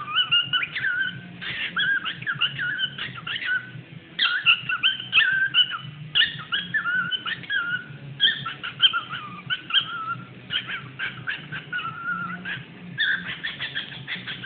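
Cockatiel chattering and warbling: a quick run of short whistled notes mixed with scratchy clicks, broken by a few brief pauses.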